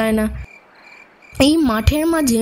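Storytelling narration in Bengali that breaks off briefly; in the pause, crickets chirp faintly in the background of the sound design, and then the narration resumes.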